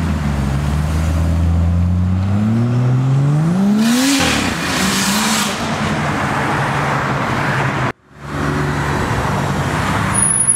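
Car engine accelerating hard. Its note holds steady, then climbs sharply in pitch for about two seconds and drops suddenly just past four seconds in, with a rush of noise around the drop. The sound cuts out briefly near the end.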